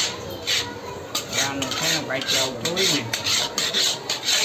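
Flat metal spatula scraping and stirring semolina around a steel kadai, repeated rasping strokes about two a second, while the suji is roasted for halwa.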